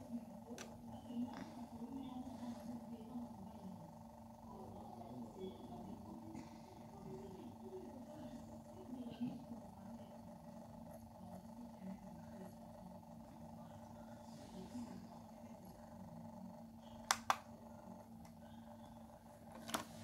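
Faint, muffled voices in the background over a steady low hum, with two sharp clicks close together about three seconds before the end.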